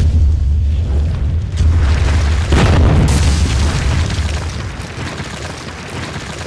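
Logo-sting sound effects for a wall breaking apart: a deep low rumble and boom, with a heavy crashing impact about two and a half seconds in, then fading away.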